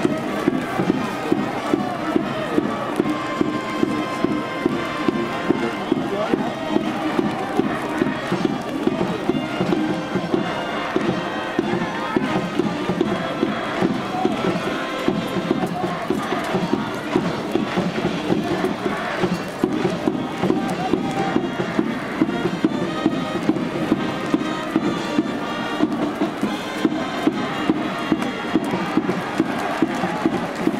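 A university baseball cheering section: a brass band playing over a steady drum beat, with a crowd chanting along.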